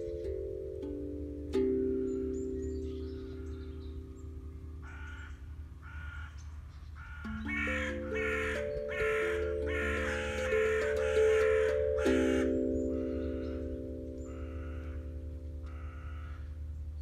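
Crows cawing in a long run of harsh calls, about two a second, loudest in the middle, over an aquadrum played by hand, its slow struck notes ringing on.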